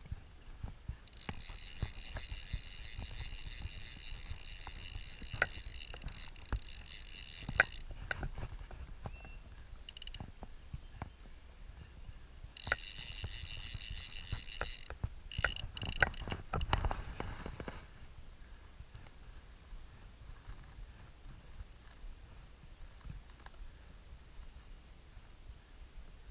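Fly reel's click ratchet buzzing as line is wound in, in two spells of several seconds each, with scattered knocks against the boat.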